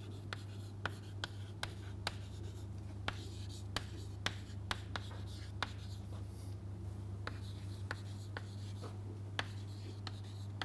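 Chalk writing on a chalkboard: irregular sharp taps, a few a second, with light scratching as each letter is stroked out, over a steady low hum.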